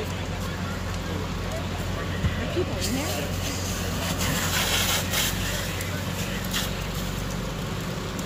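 Fire engines running with a steady low drone. A rushing hiss joins in about three seconds in and fades a couple of seconds later.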